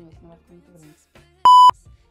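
A single short electronic bleep tone, a steady high beep lasting about a quarter of a second near the end, much louder than the faint voice and music around it.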